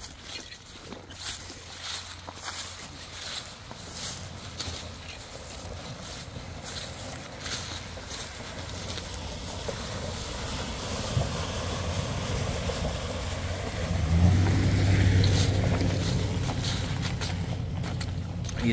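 A pickup truck driving through a flooded stretch of gravel road and passing close: its engine and tyres grow steadily louder, loudest about fourteen seconds in as it goes by, with water swishing off the tyres.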